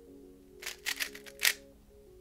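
GAN 356 Air SM speedcube turned fast through a U-perm algorithm: a quick run of about half a dozen plastic clacks from its turning layers in under a second, over background music.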